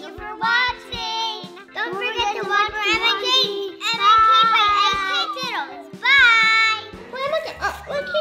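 Children's high voices singing over a background music track with steady held low notes.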